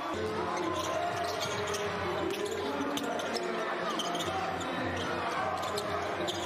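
Basketball being dribbled on a hardwood court, with scattered thuds of the ball over a steady background of crowd and player voices in the arena.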